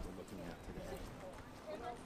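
Background voices of other people walking, with footsteps on a concrete walkway.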